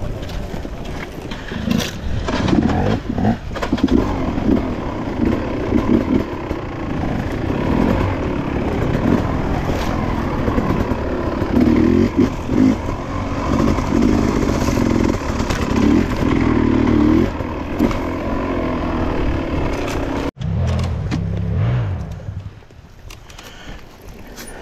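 Off-road dirt bike engine heard from on board, revving up and down under changing throttle while riding a rough trail, with knocks from the bike over bumps early on. The sound breaks off sharply about twenty seconds in and is quieter near the end.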